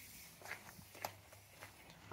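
Faint footsteps on a concrete driveway, a few soft steps about half a second apart.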